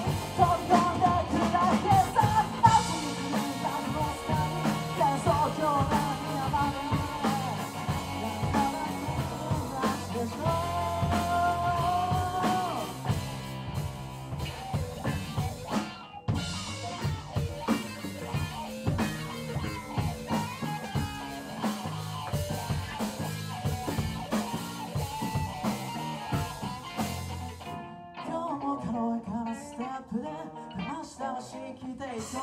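Live rock band playing a song: a lead singer over drum kit, bass, keyboard and electric guitar. The vocal carries the first dozen or so seconds, then the instruments go on with little singing, with a brief break in the sound about halfway through and a thinner passage near the end.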